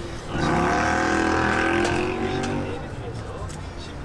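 A motor vehicle passing close by on the street. Its engine note swells just after the start, holds for about a second and a half, then fades.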